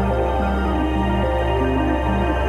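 Ambient new-age meditation music: a steady low drone under a slow line of short held synth notes that change about every half second.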